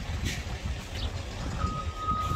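An electronic vehicle warning beeper starts a steady high beep about one and a half seconds in, over a constant low rumble.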